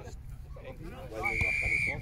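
Referee's whistle: one steady, high blast lasting under a second, starting a little past halfway, over men's voices.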